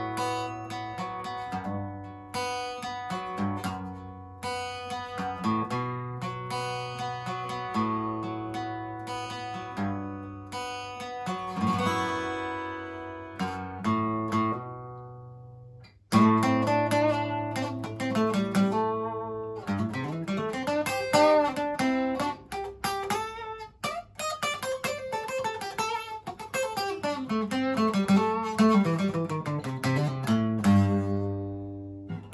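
Yamaha FG441S acoustic guitar with a solid spruce top, played with picked notes and chords. About halfway through, a chord is left to ring and die away. Playing then resumes louder, with quicker note runs and slides.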